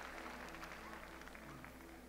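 Faint, fading applause from a large congregation, with a soft steady tone beneath it.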